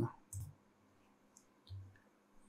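A few faint computer mouse clicks: one soft click about a third of a second in, a tiny tick in the middle and another soft click near the end.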